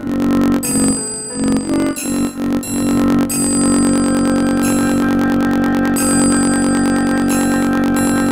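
Synthesized flute playback from a notation app of the closing phrase of a raag Yaman lakshan geet: a short run of separate notes, then one long held final note from a little under halfway in.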